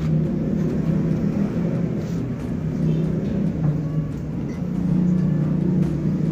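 Steady low drone of a running engine or motor.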